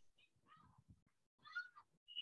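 Near silence with a faint, short, high-pitched cry that rises in pitch about one and a half seconds in.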